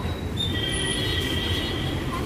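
A steady high-pitched squeal that starts about half a second in and holds, over a low street-traffic rumble.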